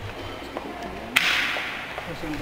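A single sharp crack about a second in, followed by a short hiss that dies away.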